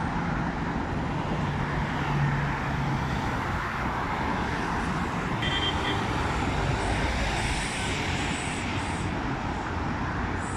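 Steady traffic noise from a busy multi-lane highway: the tyres and engines of many cars, vans and city buses passing continuously, with a low engine drone from a heavier vehicle now and then.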